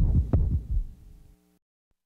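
Two deep thumps about a third of a second apart, the first sharp and loudest, then a fading low hum that cuts off to silence partway through.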